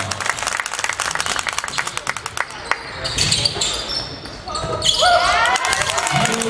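Basketball dribbled on a hardwood gym floor during live play, a run of sharp bounces, with short sneaker squeaks about five seconds in.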